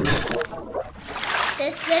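The tail of an electronic intro sting gives way to a rushing, hiss-like transition effect that fades. A voice comes in near the end.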